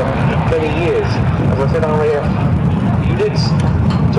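A man's voice over a public-address loudspeaker, giving airshow commentary, over a steady low rumble.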